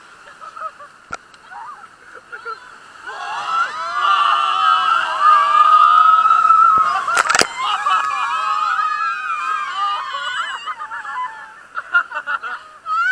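River-rapids raft riders screaming and yelling together, starting a few seconds in, with one long held scream over water rushing and splashing around the raft. A sharp knock cuts through about halfway.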